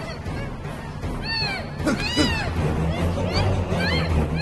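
A gagged woman's high-pitched, muffled cries, each rising and then falling in pitch, repeated about once a second over a low, steady background score.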